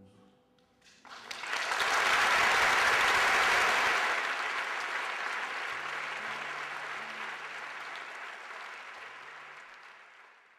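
Audience applause that breaks out about a second in, swells to its loudest within a couple of seconds, then slowly fades away.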